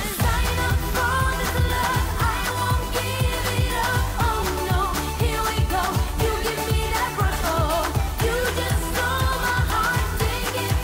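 Female pop vocalist singing into a handheld microphone over a full pop backing track with a steady kick-drum beat.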